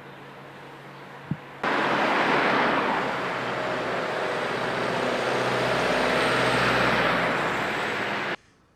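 Street traffic noise. It is faint at first, then from about a second and a half in it becomes an abrupt, much louder, steady wash of road noise from passing vehicles.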